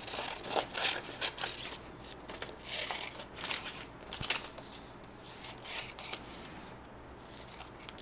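Scissors cutting through a sheet of paper in short, irregular snips, with paper rustling as it is handled and pressed flat.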